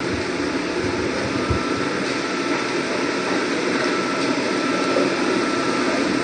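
Steady room noise, an even hiss with a faint high tone that comes in about a second in.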